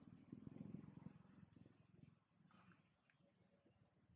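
Near silence: a faint low rumble, a little stronger in the first second, with a few soft ticks.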